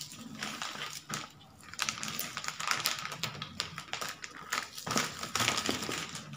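White plastic courier mailer bags crinkling and rustling as hands lift, slide and smooth them flat, in an irregular string of crackles.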